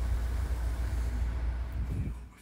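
A steady low rumble with an even background hiss and no distinct events.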